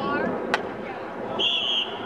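A short, steady high blast of an umpire's whistle about one and a half seconds in, over spectator and sideline chatter, as the ball is about to be put back into play. A single sharp click comes about half a second in.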